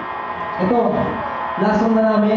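A man's voice through a PA microphone, with long drawn-out syllables, while the band has stopped playing.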